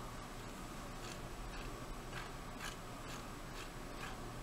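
Faint, irregular clicks from a computer mouse scrolling a list, about seven in four seconds, over a steady low hiss.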